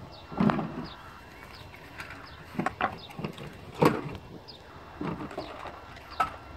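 A few sharp knocks and clatters of objects being handled, the loudest about four seconds in, with small birds chirping in the background.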